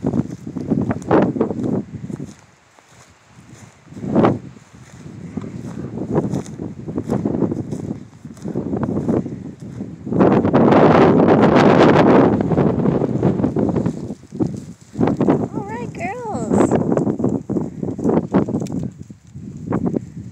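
Sheep bleating, a few wavering calls in the second half, amid scuffing and rustling in dry grass. A loud rushing noise lasts about two seconds around the middle.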